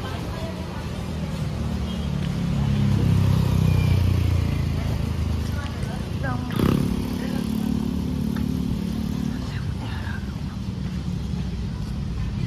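Street traffic: the low hum of a vehicle engine swells as it passes about two to five seconds in, and another passes through the middle with a brief knock.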